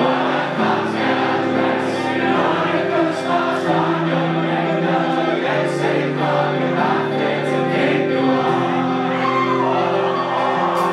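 A rock band playing live: electric guitars and bass holding sustained chords, with singing over them.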